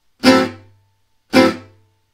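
Gypsy jazz acoustic guitar with an oval soundhole, strummed twice with a plectrum on an Am6 chord: the one-and-three downbeat strokes of la pompe rhythm. Each stroke is short and choked off, because the fretting hand releases the strings right after the strike.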